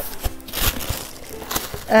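Tissue paper rustling and crinkling in a few short bursts as hands dig through a cardboard box.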